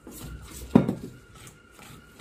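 A hand mixing gram flour and rice flour with water into batter in a stainless steel bowl: soft scraping and rubbing against the steel, with one louder knock under a second in.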